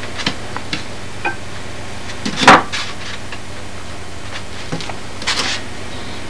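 Light clicks and taps and one sharp knock about two and a half seconds in, as a steel straightedge and drafting tools are handled on a foam block, over a steady low hum.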